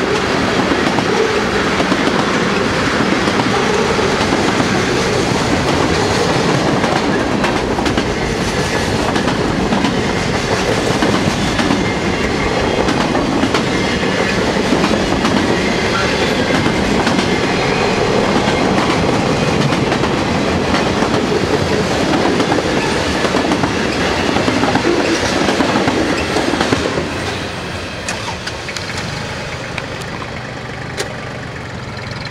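Freight train of tank cars and boxcars rolling past close by: a steady, loud rolling rumble of wheels on rail. It turns quieter near the end.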